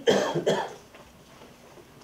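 A man coughing: two loud coughs about half a second apart in the first second.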